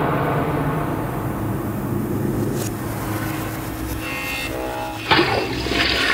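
Horror background score: a low, dark drone with a few faint held tones near the middle, then a sudden loud rushing whoosh hit about five seconds in that carries on to the end.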